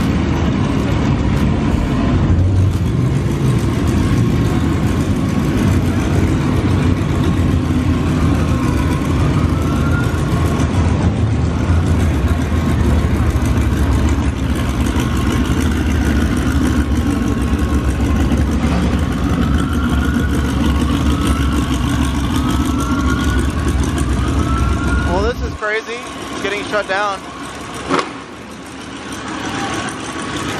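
Modified high-performance car engines idling with a deep, steady rumble, with voices in the background and a few short rising whistles. About 26 seconds in, the rumble cuts off suddenly, leaving lighter sounds and a sharp click a couple of seconds later.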